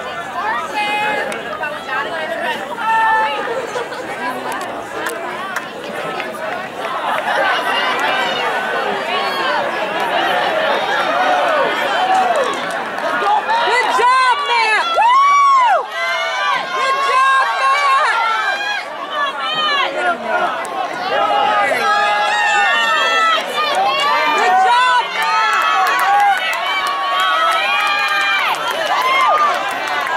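Crowd of spectators talking over one another, with raised voices calling out to the runners, loudest around the middle.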